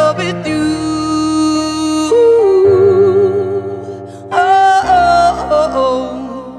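Female voice singing a few long held notes without words, with a wide vibrato and slides between pitches, over sustained chords from a Roland Juno-Stage keyboard.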